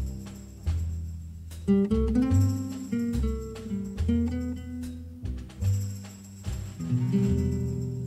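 Music from a DJ set played on Pioneer decks: a track with deep bass notes and pitched notes that start sharply and fade.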